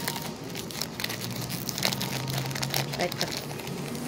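Crinkling of a small plastic wrapper being handled and opened by hand, with irregular sharp crackles throughout.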